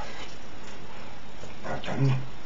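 Steady hiss with a brief voiced vocal sound near the end.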